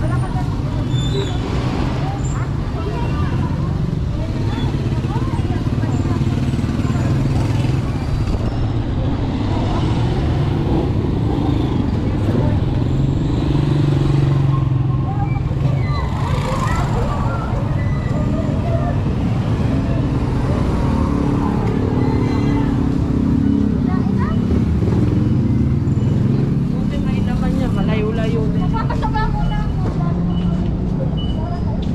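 Busy street sounds: motorcycle tricycle engines running close by, swelling louder in the middle, with passers-by talking.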